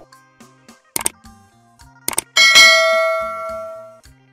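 Sound effects of an animated subscribe button. Two quick clicks come about a second in and two more just after two seconds. Then a bright bell ding rings out and fades away over the last second and a half.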